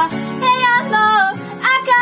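A voice singing a Japanese ballad, accompanied by an acoustic guitar.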